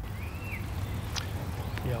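Outdoor broadcast ambience: a steady low rumble with a short, faint high whistle near the start and a couple of light ticks about a second in.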